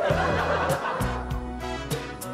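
Laughter, loudest in the first second and then fading, over background music with a steady beat.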